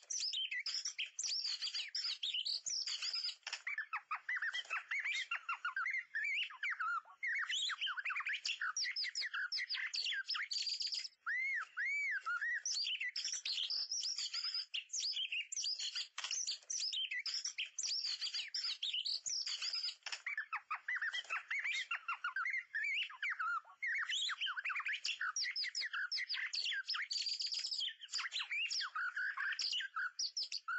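White-rumped shama song, most likely the MP3 lure recording: an unbroken run of rapid, varied whistles, trills and chirps, with only a few momentary breaks.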